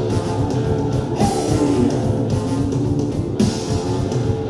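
A live rock band playing loudly, with electric guitars and drums and a trombone among the sustained notes.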